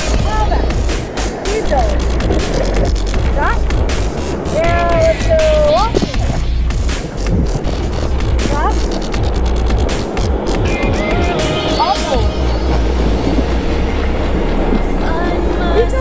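Whitewater rushing and splashing against an inflatable raft, picked up by a camera close to the water, with water and handling knocking on the microphone. Rafters shout and whoop over it, loudest about five seconds in and again near twelve seconds.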